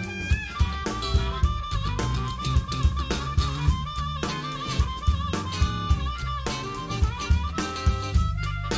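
Blues band music: a harmonica plays a wavering, repeatedly bent line over a drum kit and bass, with no singing.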